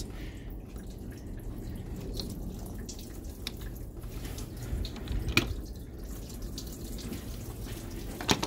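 Coolant dripping and trickling from a cracked plastic radiator drain valve into a funnel and catch pan, with a few faint ticks, as the radiator starts to drain.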